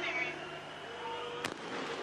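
A starting pistol fires once, a single sharp crack about a second and a half in, starting the sprint race. Under it runs the steady hubbub of a stadium crowd.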